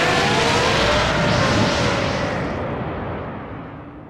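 Cartoon energy-blast explosion sound effect: a long, loud blast that fades away over the last second or so, with faint rising whistling tones in the first two seconds.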